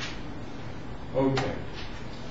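Room tone from a lecture hall, with a man's brief voiced hesitation sound a little past halfway, ending in a sharp click.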